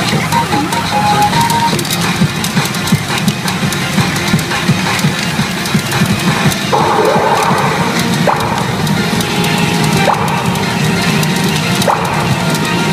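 Newgin CRA Yasei no Oukoku SUN N-K pachinko machine playing its game music and sound effects, loud and continuous, with many short clicks throughout and a brighter burst of effect sound about seven seconds in as the animal-race sequence plays.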